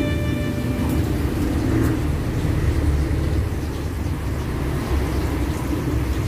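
Steady low rumble of background noise, with a few held music notes dying away in the first second.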